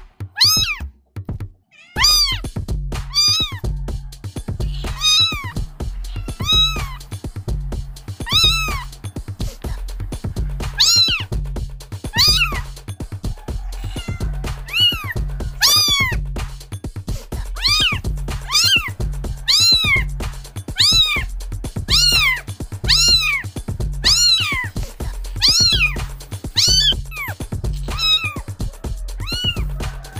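Kitten meows repeating in time, about once a second, over a music track with a steady low bass beat that comes in about two seconds in.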